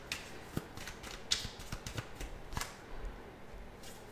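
A tarot deck being shuffled and split between two hands: a faint papery rustle of cards with a few light clicks.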